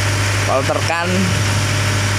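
A steady low machine hum, like an engine running at idle, continuing unchanged under brief speech.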